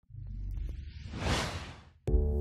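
Channel-ident whoosh sound effect: a low rumble swells into a rushing whoosh, loudest a little past halfway, then fades out just before the end. A few faint clicks sit under it in the first second.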